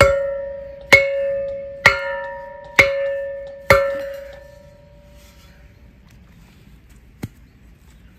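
Hand post driver, a hollow steel tube with handles, slammed down five times on a wooden tree stake, about once a second, driving the stake into soft ground. Each blow gives a sharp clang and the steel tube rings on with a clear tone that fades before the next blow. A faint single knock follows a few seconds after the last blow.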